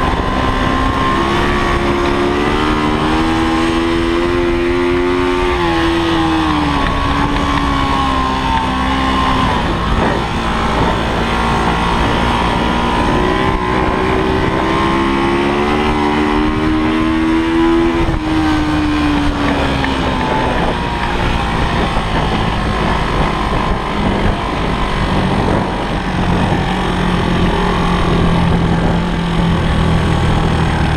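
Honda CB250 motorcycle engine under race riding. Its pitch rises twice as the bike accelerates, and each time falls away after a few seconds.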